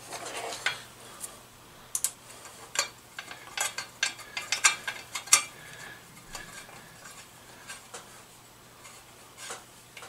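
Sharp metallic clicks and clinks of screws and a small hand tool against the motorcycle engine's metal side cover as the cover is fitted back on. The clicks come thick in the first five or six seconds, then only a few quieter taps.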